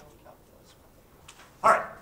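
Quiet room tone, then one short, loud vocal sound near the end, a brief reply in answer to a question.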